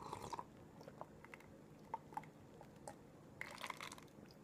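Faint crunching, as of chewing: a short burst at the start, a few single clicks, and a denser burst near the end.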